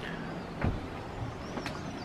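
Steady rushing of a mountain stream over rocks, with a couple of sharp knocks and faint high chirps near the end.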